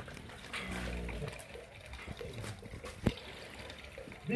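Holstein cow giving a brief, deep low of just under a second, followed about two seconds later by a single sharp knock.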